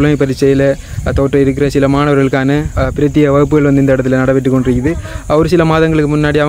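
A man speaking continuously to the camera, most likely in Tamil, with only brief pauses.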